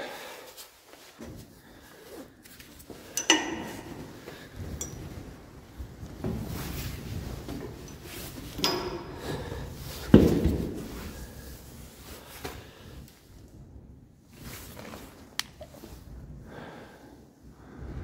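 Scattered knocks and clunks on metal scaffolding and a metal ladder as someone climbs across onto the ladder, with rustling and handling noise between them; the loudest knock comes about ten seconds in.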